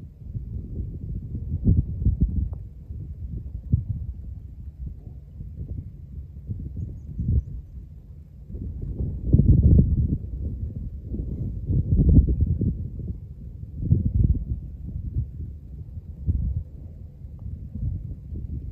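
Wind buffeting the microphone: a low, gusty rumble that swells and fades, loudest around nine to ten seconds and again about twelve seconds in.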